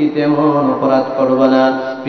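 A man's voice through a microphone and PA, preaching a Bengali sermon in a sung, chanting delivery with long held notes.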